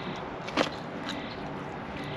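A mouthful of thick, bready pizza crust being chewed, with one short sharp bite sound about half a second in, over steady outdoor background noise.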